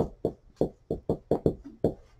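Dry-erase marker writing letters on a whiteboard: a quick run of short squeaking, tapping strokes, about four a second, the first one the loudest.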